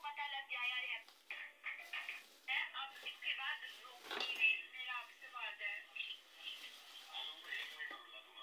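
Talking voices that sound thin, with no low end, and a single clatter about four seconds in.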